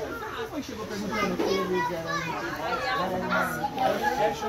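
Lively chatter of several men's voices overlapping one another in a group conversation.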